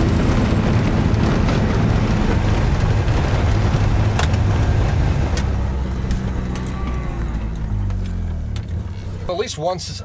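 Side-by-side UTV engine running steadily as it drives across pasture, heard from inside its enclosed cab. The engine note drops and fades as it slows near the end, and a man starts talking just before the end.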